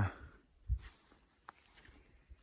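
Quiet evening field ambience: a steady, faint high-pitched insect whine, with one low thump less than a second in and a few faint clicks.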